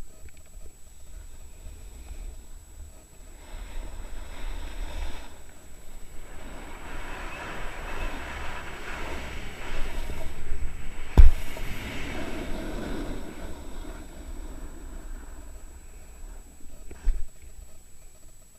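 Snowboard sliding and scraping over snow, heard from a camera worn by the rider, with wind rumbling on the microphone; the scraping rises and grows loudest in the middle. A loud thump comes about eleven seconds in, as the board hits the snow, and a smaller knock near the end.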